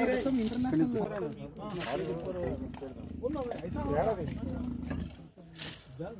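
Trapped leopard growling, with a low rumbling growl through the middle seconds and people's voices over it.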